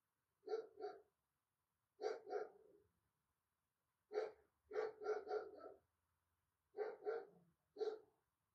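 A dog barking in short clusters of two to four barks, about five clusters spread across the few seconds with pauses between.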